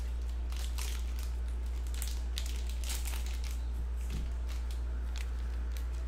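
Plastic wrapping crinkling in the hands in a run of short crackles as a trading-card pack is opened, over a steady low hum.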